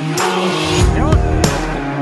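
Background music with a steady drum beat and held notes.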